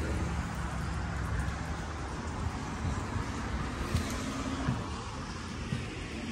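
Road traffic noise from passing cars: a steady low rumble that is strongest at the start and eases after about a second.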